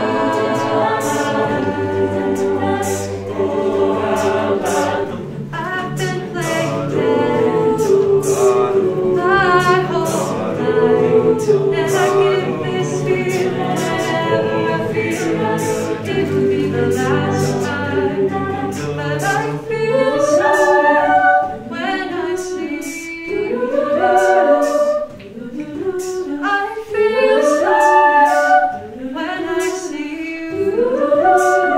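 Mixed a cappella ensemble singing close-harmony chords over a low sung bass line. About twenty seconds in the bass drops out, and a lead voice carries a gliding melody over lighter backing voices.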